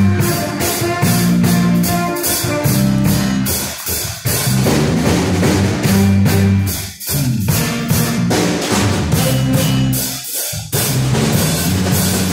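Live band playing: a drum kit beat under an electric bass line and electric keyboard, with two short breaks in the playing about seven and ten seconds in.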